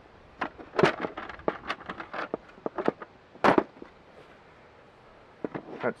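Plastic clicks and clacks of an HRC fuse holder's housing being worked open by hand, an uneven string of sharp knocks with the loudest about three and a half seconds in and a couple more near the end.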